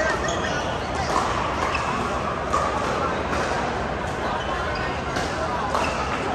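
Background chatter of many people in a large indoor pickleball hall, with the sharp pops of paddles hitting plastic pickleballs on the courts, a few times.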